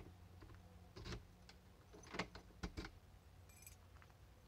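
Faint clicks and taps of camera handling over a low steady hum, with a brief high jingle near the end.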